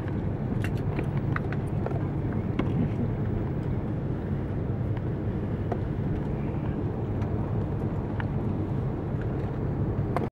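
Steady low rumble inside the cabin of an Airbus A330-300 taxiing on the ground after landing, with a few light clicks and knocks in the first two seconds and another near the end.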